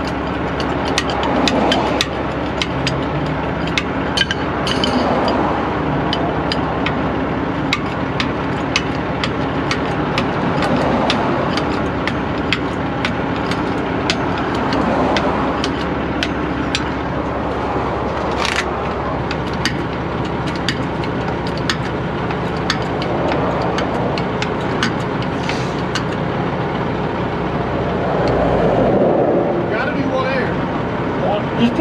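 Hydraulic bottle jack being pumped by hand with a long handle, giving repeated short metallic clicks. Under it runs the steady hum of a truck engine idling.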